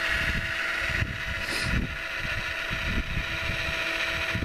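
Wedico scale RC Caterpillar 966 wheel loader working in snow: its electric motors and hydraulic pump give a steady whine. Gusty wind rumbles on the microphone.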